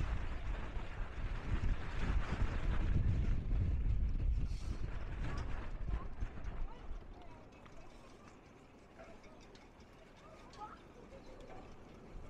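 Wind buffeting the microphone, loud and low, dying away a little over halfway through. Faint voices of people nearby can be heard near the end.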